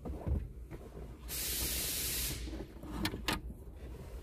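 A loud hiss lasting about a second, then two sharp clicks in quick succession.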